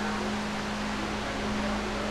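Large drum-style floor fan running: a steady motor hum under a constant rush of air.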